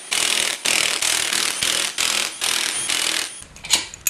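Cordless impact wrench hammering in a string of short bursts as it loosens the 14 mm ladder-frame bolts on the bottom end of a Honda L15 engine. Near the end come a few light metal clinks.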